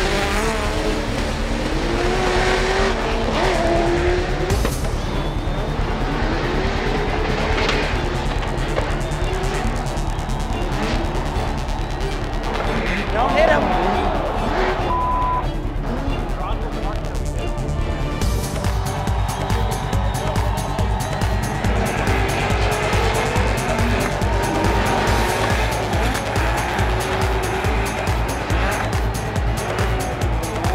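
Drift cars' engines revving up and down and tyres squealing and screeching through smoky slides, laid over background music. The music's steady beat becomes stronger past the middle.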